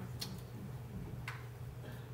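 Two short, sharp clicks about a second apart over a steady low room hum.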